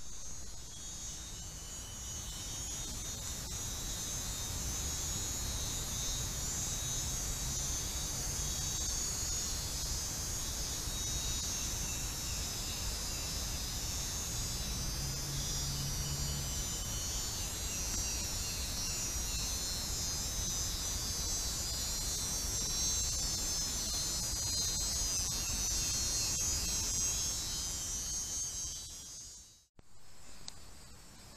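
Dense, steady chorus of tropical forest insects buzzing high, with short repeated chirping trills from a few insects a little lower in pitch.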